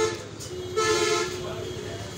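A horn sounds once, about three-quarters of a second in: a single steady pitched blast lasting about half a second, heard over background voices.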